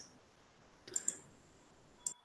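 Near silence broken about a second in by a short cluster of a few clicks.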